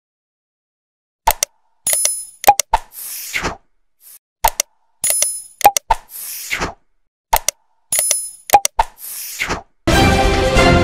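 Sound effects for an animated subscribe button, starting about a second in: mouse clicks, a bright bell ding and a falling whoosh. The set repeats three times, about every three seconds, and music comes in right at the end.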